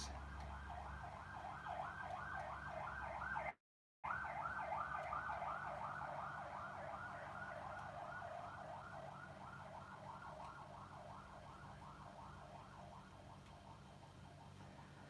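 Emergency-vehicle siren in a fast yelp, rising and falling about four times a second, slowly fading away. The sound cuts out for a moment a few seconds in.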